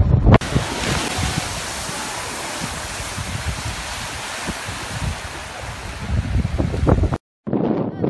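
Strokkur geyser erupting: a sudden, steady rushing hiss of the jet of water and steam, with wind buffeting the microphone. It cuts off abruptly about seven seconds in.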